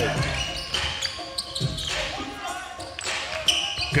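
A basketball being dribbled on a hardwood court, mixed with voices in a large hall.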